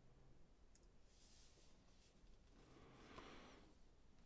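Near silence: faint room tone with a couple of soft clicks.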